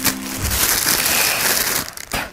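Black plastic mailer bag crinkling steadily as it is handled and cut open with a small knife. The rustling stops sharply just before the end.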